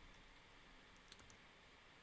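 Near silence broken by a few faint clicks of a computer mouse a little over a second in.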